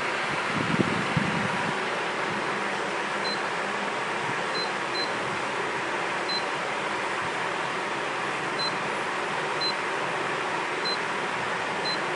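Short high-pitched beeps from the keypad of a DeepJoint T200 battery strapping tool as its buttons are pressed, eight in all at irregular spacing, over a steady hiss. A few low knocks of the tool being handled come in the first second or so.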